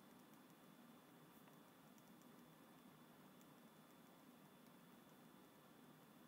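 Near silence: faint room hiss with a few soft ticks and scratches of a pen writing on paper.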